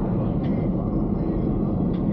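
Steady road and engine noise inside the cabin of a Suzuki S-Presso cruising at about 50 km/h, with a low, even drone underneath.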